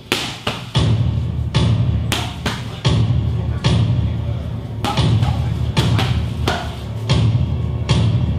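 Music plays under a run of sharp, unevenly spaced smacks and thuds: kicks, knees and punches landing on Thai pads and a belly pad.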